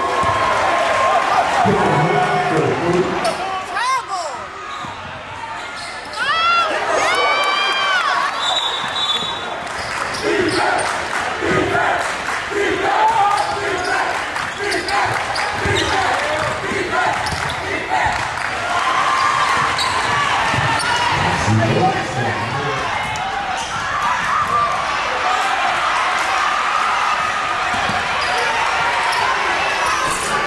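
Basketball game sounds: a ball bouncing on a hardwood gym floor and sneakers squeaking, with crowd voices throughout. A run of high squeaks comes close together about six to eight seconds in.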